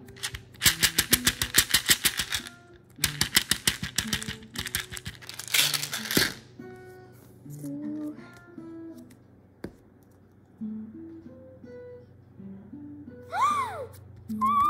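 Background music: a plucked, guitar-like melody of short notes, with rapid runs of clicks in the first half and a brief gliding tone near the end.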